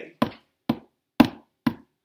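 Hand taps keeping a steady beat for a chanted story: four sharp taps, evenly spaced about half a second apart.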